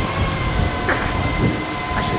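A vehicle on the street running with a steady high whine held on a few even tones, over a low rumble.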